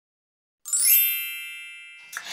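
A single bright bell-like chime struck about half a second in after dead silence, ringing on and slowly fading; an edited-in ding sound effect.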